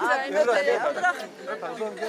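Several mourners' voices overlapping in indistinct talk, no single voice clear.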